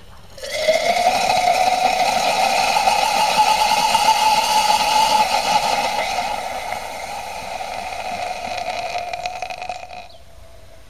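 A gummy bear burning violently in molten potassium chlorate inside a test tube: a loud rushing roar with a steady tone in it. It starts suddenly about half a second in, eases off after about six seconds and cuts off just before the end.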